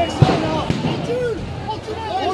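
Voices of people talking and calling out over each other, with one sharp bang about a quarter of a second in.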